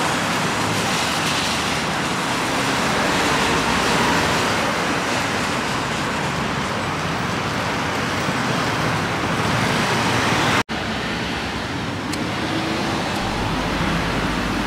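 Road traffic passing on a town street: a steady wash of vehicle engine and tyre noise from cars and vans. The sound cuts out for an instant about ten seconds in, then carries on slightly quieter.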